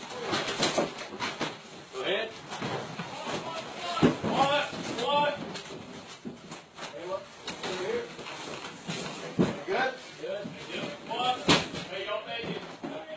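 Officers' voices, raised but not clearly worded, during a police entry, with scattered sharp knocks and bangs; the strongest come about four seconds in and near the end.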